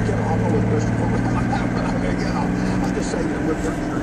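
Vehicle engine and road noise heard from inside the cabin while driving, a steady low drone that eases off near the end.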